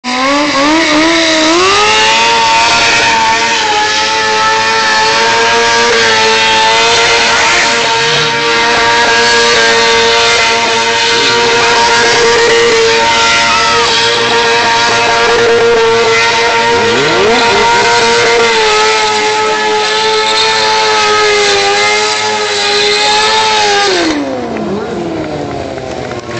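Sport motorcycle engine revved up and held at high, nearly steady revs for about twenty seconds in a burnout, the rear tyre spinning on the concrete. Near the end the revs fall away and the engine sound drops off.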